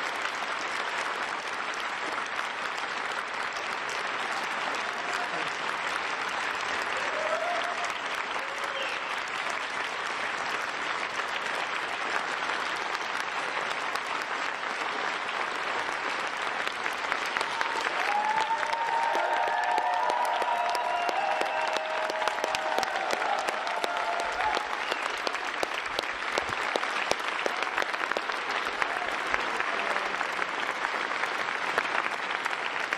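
A large audience applauding steadily throughout, with a few voices heard through the clapping around the middle.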